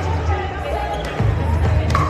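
Pickleball paddles hitting a plastic ball during a rally: sharp pops, the loudest near the end.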